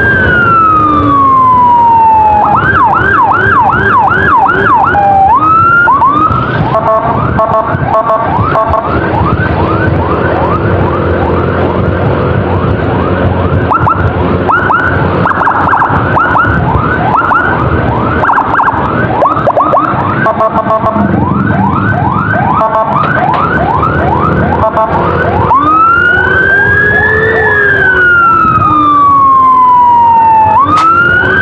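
Electronic emergency sirens switching modes: a slow rising-and-falling wail, then a fast yelp of about three sweeps a second from about two seconds in, overlapped through the middle by a second siren's sweeps, and a slow wail again near the end. Engine and road noise run underneath.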